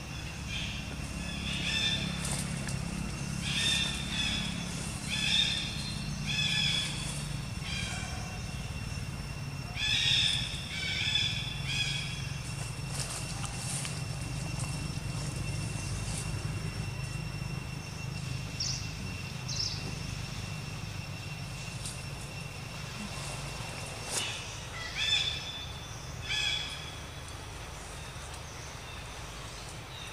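Short, high-pitched animal calls repeated about once a second in a run of several, then a few more near the end, over a steady low rumble.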